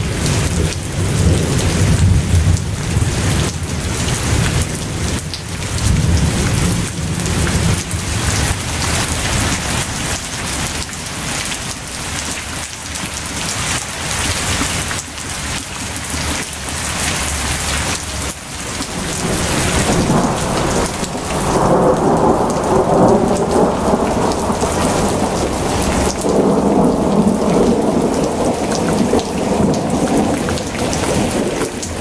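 Heavy rain with thunder rumbling, a thunderstorm recording; the storm grows louder about two-thirds of the way through.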